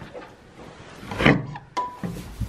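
Wooden barn stall door being pulled open: boards knocking and scraping.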